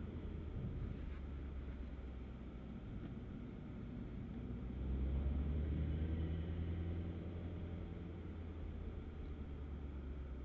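Mini Cooper S turbocharged 2.0-litre four-cylinder engine running with tyre and road noise, heard from inside the car as it drives. About five seconds in the engine gets louder for two or three seconds, then settles back.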